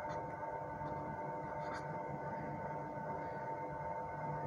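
Steady background hum with a constant whine, and a couple of faint strokes of a felt-tip marker writing.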